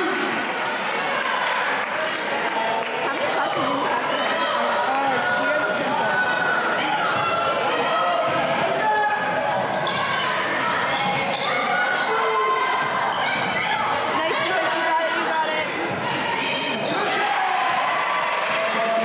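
Basketball game sound in a gym: a ball bouncing on the hardwood floor, sneakers squeaking, and indistinct voices of players and spectators echoing in the large hall.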